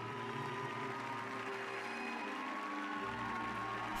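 An orchestra playing slow, held chords.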